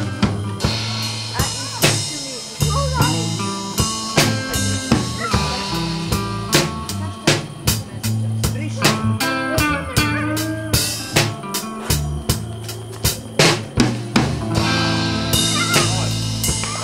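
Live rock band playing: electric guitar, electric bass guitar and drum kit. The drums keep a steady beat under a moving bass line and electric guitar lead lines with bent notes.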